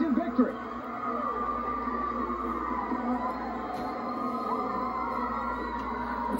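A man's voice trails off, then a quieter steady bed of held, music-like tones and faint voices follows. This is the background audio of the wrestling broadcast being commentated.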